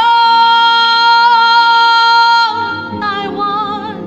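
A woman singing solo, holding one long high note steadily for about two and a half seconds, then dropping into a shorter phrase with vibrato. There is a quiet low keyboard and bass accompaniment underneath.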